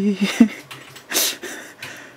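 A person's voice drawing out the end of a spoken word, then a short breathy hiss about a second in.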